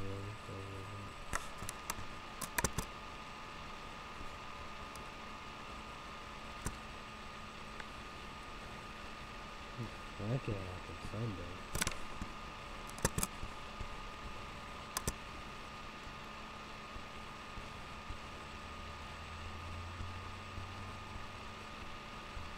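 Steady low room hum with a few scattered sharp clicks, and a brief vocal sound about ten seconds in.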